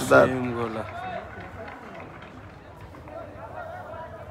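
A man's voice, loud and drawn out, in the first second. After it comes a low murmur of distant voices.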